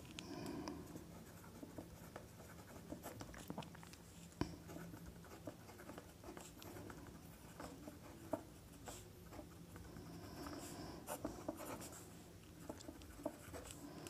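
Pen writing on paper: faint, irregular scratching strokes and small taps as numbers and letters are written, with one sharper tap a little over four seconds in.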